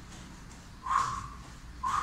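A man's forceful exhalations, two short breaths about a second apart, in time with his jumps during a hard cardio interval.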